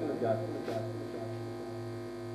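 Steady electrical mains hum and buzz, a low drone with evenly spaced overtones, carried through the microphone and sound system.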